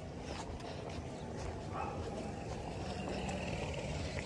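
Footsteps walking on a concrete road, with a drawn-out animal call that starts a little before the middle and lasts about two seconds.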